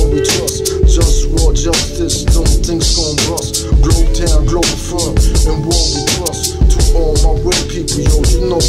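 Hip hop track: a beat with heavy bass and regular drum hits under held chords, with rapping over it.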